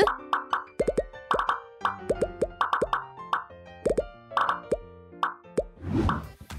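Pop-it fidget toy bubbles being pressed: a quick, irregular string of short plopping pops, about two or three a second, over background music.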